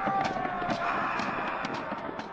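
Battle-din sound effect: a noisy crowd-like wash with scattered sharp clashes, fading away steadily.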